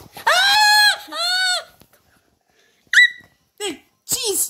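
A child's voice letting out two long, high-pitched cries that rise and fall in pitch, then a short sharp yelp about three seconds in: play-acted screams of fright.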